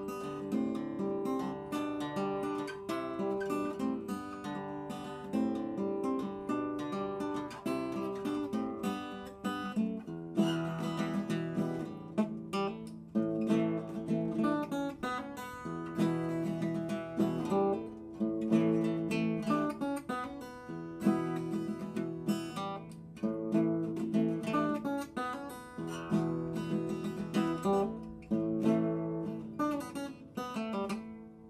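A 1965 Martin 00-18, a mahogany-bodied steel-string acoustic guitar, fingerpicked: a continuous run of plucked notes and chords, with the bass notes getting stronger about ten seconds in.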